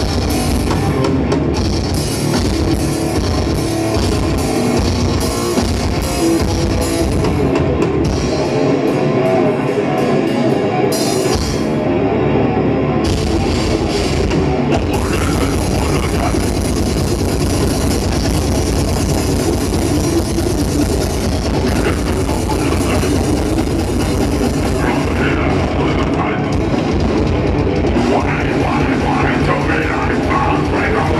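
Death metal band playing live through a PA: distorted electric guitars, bass and drums. The kick drums drop out for a few seconds about a third of the way in, then come back in fast and dense.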